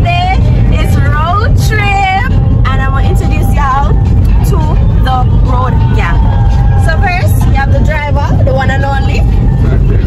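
A woman singing with several long held notes inside a moving car, over the steady low rumble of the car cabin's road and engine noise.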